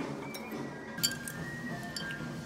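Background music with a sharp glass clink about a second in, with fainter clicks either side: a drinking glass knocked or set down on a table.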